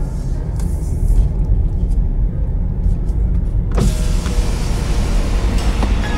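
Cabin noise of a Honda Insight hybrid on the move: a steady low rumble, joined about four seconds in by a brighter hiss that carries on.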